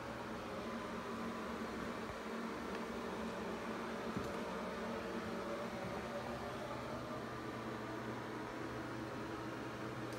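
Steady low hum with a hiss over it: the room's background noise, unchanging, with one faint tick about four seconds in.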